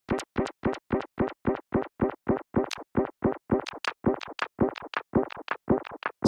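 Synthesizer notes run through a Delay+ delay in repitch mode with feedback, chopped into a rapid stutter of short glitchy fragments, about five a second, each with a quick pitch slide. It is a broken-tape effect: the tape is completely broken.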